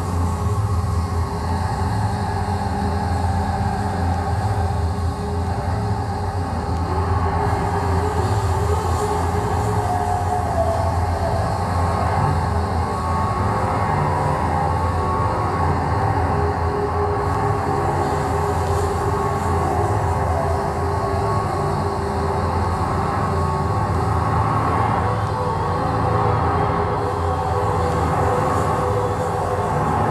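Steady, dense drone of improvised experimental music: an electric bass run through effects pedals together with electronics. A heavy low hum lies under a slowly shifting middle layer of sustained tones, with no break or pause.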